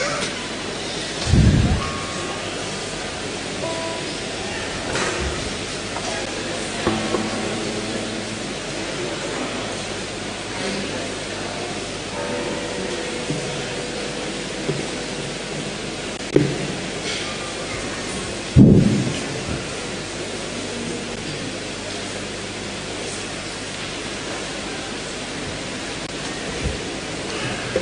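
Steady rushing room noise in a crowded church, with faint scattered voices and a few dull thumps, the loudest about two-thirds of the way through.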